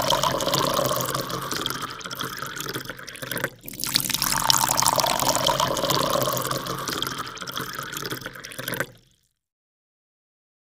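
Water splashing and rushing sound effect, with a brief break about three and a half seconds in; it cuts off abruptly about nine seconds in.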